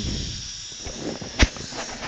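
A steady hiss, with a single sharp click about one and a half seconds in.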